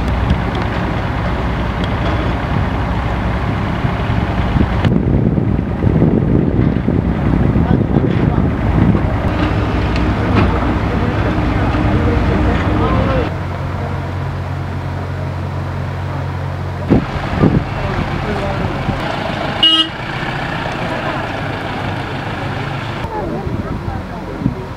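Heavy machinery engines running with a steady low hum, with people's voices underneath; the sound changes abruptly several times.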